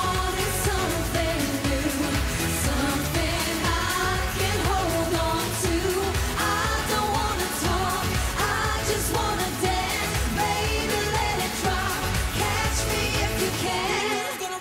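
Pop song performed live: women's voices singing into microphones over a full band-style backing with a steady driving beat.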